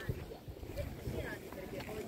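Wind rumbling irregularly on the microphone, with faint voices of people standing around.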